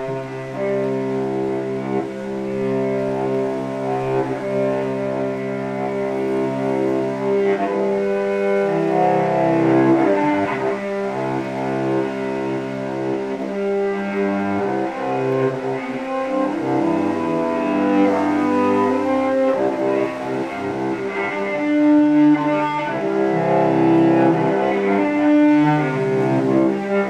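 Solo cello bowed in long held notes, often more than one note sounding at a time, at a steady moderate level.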